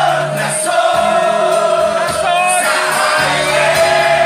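Filipino rock (OPM) song with a male lead vocal holding long, wavering notes over a band's bass and drums.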